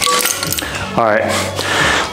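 A man's voice making a short vocal sound that slides down in pitch, about a second in, with music in the background.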